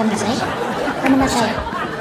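Speech: several voices saying "sorry" over and over, talking over one another, with a short laugh near the end.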